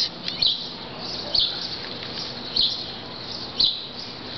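Short, high bird chirps repeating about once a second, over faint steady outdoor background noise.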